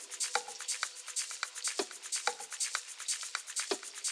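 Quiet, stripped-down outro of an electronica track: a sparse loop of short clicky percussion ticks with a few louder hits over faint held tones, with no bass.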